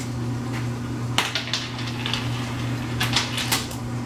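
Ice cubes clicking and clattering in a few quick bursts, over a steady low hum.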